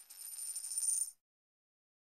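A cash-register style money sound effect: a high bell ring carrying on over a rattle of coins, which cuts off suddenly about halfway through.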